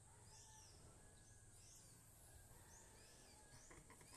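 Near silence: faint outdoor ambience with a few faint, high bird chirps about once a second over a low steady hum.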